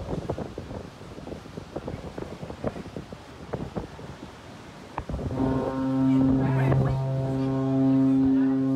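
A large cruise ship's horn sounds a long, steady, deep blast starting about five seconds in, as the ship maneuvers dangerously close alongside another.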